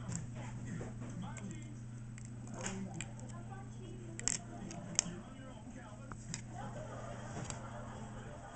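A small dog's teeth clicking and knocking on a stiff yellow toy stick as she grabs at it: scattered light clicks, with two sharp ones about four and five seconds in, over a steady low hum.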